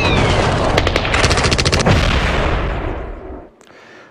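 Battle sound effects of gunfire and explosions: a dense rumble with a falling whistle at the start and a rapid burst of shots about a second in, fading out over the last two seconds.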